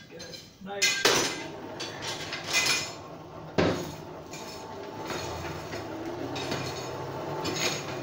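Metal forge tools clanking and scraping in a coal forge, with the loudest knocks in the first four seconds. From about five seconds in a steady rumble takes over as the forge's air blast comes up and the fire flares.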